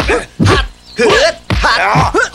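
Fighters' short grunts and shouts during a close-quarters kung fu exchange, about four in quick succession.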